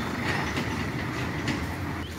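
Tractor towing a loaded trailer past at close range: a steady engine and running-gear noise.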